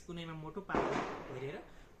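A short rustling scrape of fabric a little after the first half-second, as a hand rubs and presses the quilted cover of a pillow-top mattress sample. It is the loudest sound here, with a man's voice briefly before and after it.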